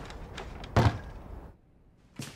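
A door shutting with a single loud thud about a second in.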